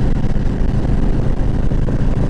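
Harley-Davidson Ultra Classic's V-twin engine running steadily while riding, with wind and road noise.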